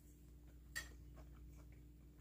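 Near silence while a mouthful of crispy breaded fried perch is chewed: one soft click about three-quarters of a second in, then a few faint ticks, over a steady low hum.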